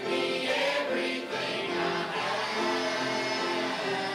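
A small congregation singing a gospel song together, accompanied by acoustic guitar, with long held notes.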